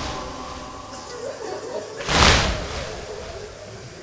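A large crowd of mourners striking their chests in unison (latm), a slow heavy beat about every three seconds: the tail of one beat fades at the start and the next lands about two seconds in, ringing in the hall.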